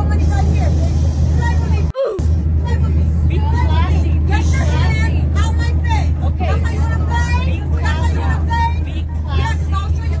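Steady low drone of an airliner cabin in flight, with passengers' raised voices arguing over it.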